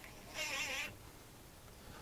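Cordless drill briefly driving a sheet metal screw through a webbing strap into an RV door frame: a short, slightly wavering whine lasting about half a second, starting about a third of a second in.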